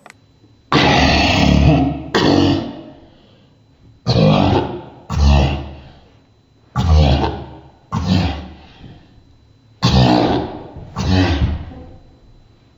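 A young man's loud wordless vocal noises, grunts in pairs: two bursts about a second apart, repeated four times about every three seconds.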